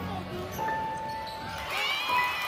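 Basketball sneakers squeaking on a hardwood gym court during play: short squeals, with a wavering run of them near the end.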